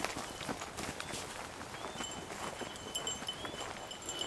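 Footsteps walking over dry, stony forest ground: irregular crunches and scuffs.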